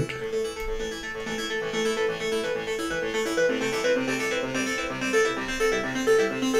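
Synth music from ten stacked instances of the Serum software synthesizer, played through a MacBook Pro's speakers. It is a keyboard-like sequence of held notes that step to new pitches about every half second. It plays cleanly with no crackling, which shows that the laptop's CPU is keeping up with the load.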